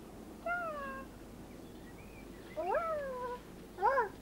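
A cat meowing three times: a falling meow about half a second in, a longer meow near three seconds that rises and then falls, and a short one at the very end.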